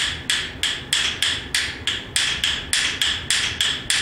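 A pair of wooden rhythm bones clacking in one hand in a steady old-time rhythm, a sharp click about three to four times a second. Some clicks fall closer together, the bounce of the triple stroke between the outward and inward movements.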